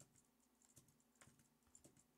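Faint computer keyboard typing: a few soft keystrokes at an uneven pace.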